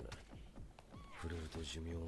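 A man's voice speaking lines of anime dialogue, in short phrases with pauses between them.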